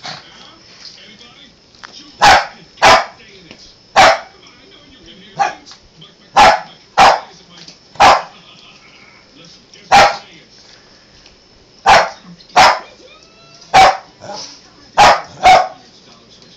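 Small dog barking at another dog: about thirteen short, sharp barks, spaced unevenly and often in quick pairs.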